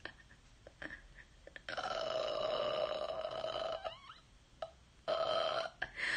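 A woman's muffled, held high-pitched vocal sound, made with her hands over her mouth. A long one starts about two seconds in and a shorter one comes near the end.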